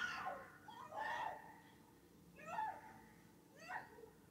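Faint high-pitched cries from the film's soundtrack, four of them, each rising and falling, about a second apart.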